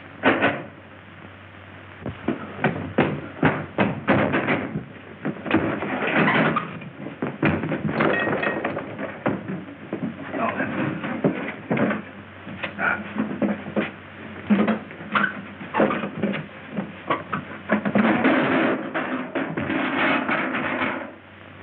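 Film soundtrack music with many sharp knocks scattered through it, on a thin old sound track.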